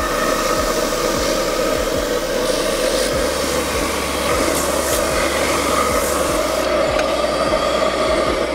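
Large JOST Big Boy orbital sander running steadily, its 220-grit paper rubbing over a mineral solid-surface panel. The higher rasping thins out about seven seconds in.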